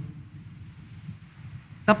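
A pause between a man's spoken phrases, filled only by a faint, low, steady background rumble. His voice comes back just before the end.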